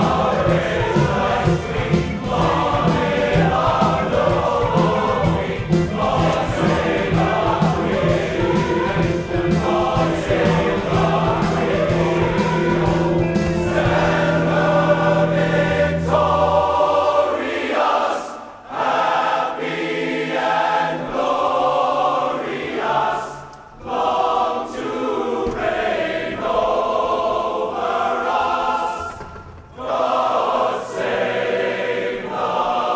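Large male chorus singing full-voiced over band accompaniment with a steady drum beat and bass; a little past halfway the band drops out and the chorus carries on unaccompanied, in phrases broken by short pauses.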